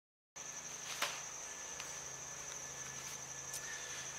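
Insects trilling outdoors in one steady high pitch, starting abruptly a third of a second in, with a single sharp click about a second in.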